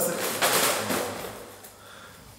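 Loaded metal shopping cart rattling and scraping as it is shifted, with a rough burst of noise about half a second in that fades away.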